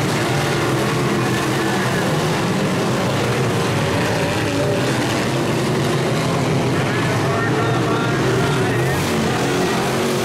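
Dirt-track modified race cars' V8 engines running hard as the field laps the oval, a steady loud drone with no let-up.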